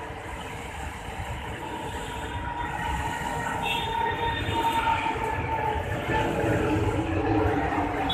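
A low background rumble that grows steadily louder, with faint, drawn-out high squealing tones over it.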